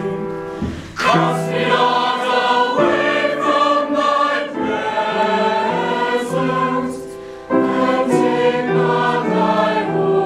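Mixed-voice choir singing sustained phrases, the sound dipping briefly about a second in and again near seven and a half seconds before each new phrase begins.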